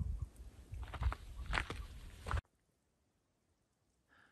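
Footsteps crunching on a gravel road, with low rumbling thumps underneath. The sound cuts off abruptly a little over halfway through.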